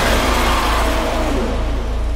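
A sound-effect passage in a hardstyle track: a rumbling, engine-like noise sweep that slides downward in pitch over a held deep bass, with no melody or beat.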